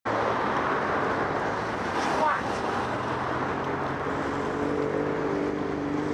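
Road traffic noise at a busy junction, with a car passing close by. A steady, even rush of engine and tyre noise runs throughout, and a steadier engine hum comes in about four seconds in.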